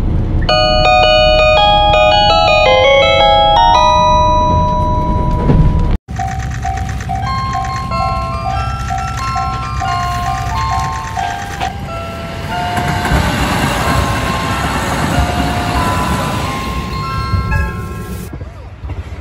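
The conductor's hand-played 15-note chime sounding over the train's PA in a KiHa 281 series diesel express, a quick run of bell-like notes over the low rumble of the running train. About six seconds in the sound cuts off and a melody of bell-like notes follows to near the end.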